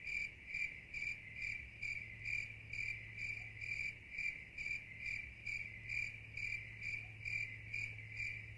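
A cricket chirping steadily in a regular rhythm, about two to three short chirps a second, as a nighttime outdoor sound effect.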